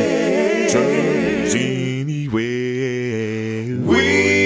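An a cappella gospel vocal group singing held chords in close harmony, with vibrato; the chord changes about two seconds in and swells near the end.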